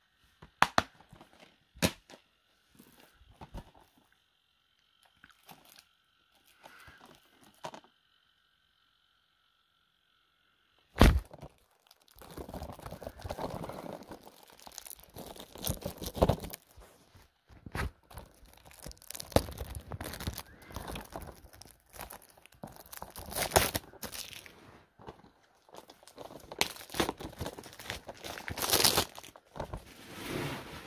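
Plastic Blu-ray cases being handled up close: scattered clicks at first, then a sharp knock about eleven seconds in. After the knock comes continuous rustling and crinkling with repeated clatters.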